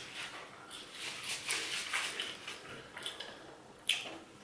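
Close-miked chewing and mouth sounds while eating French fries: many small, irregular wet crackles and smacks, with one sharper click just before the end.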